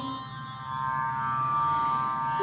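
Steady drone accompaniment of Carnatic singing, sounding alone in a pause between sung phrases. A held sung note ends right at the start.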